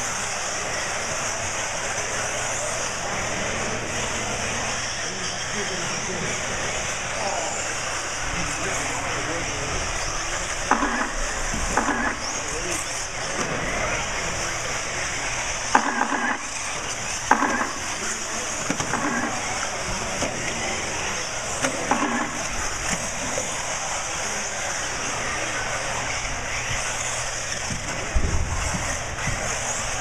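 Several 1/8-scale RC buggy nitro engines running together as the cars lap the track to warm up, a steady high-pitched drone.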